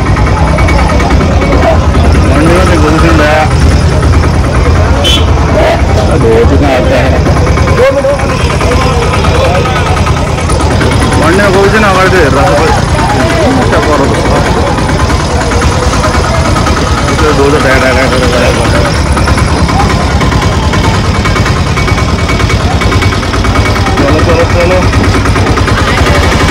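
People's voices talking over a steady low rumble of vehicle engines.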